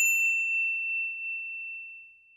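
A single high, bell-like ding that rings out on one clear tone and fades away over about two seconds.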